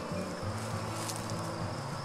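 A flying insect buzzing close by, a low hum that wavers in pitch.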